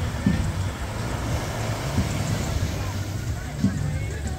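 Surf washing in on a sandy beach at the water's edge, with distant voices of people in the water and a low steady hum underneath.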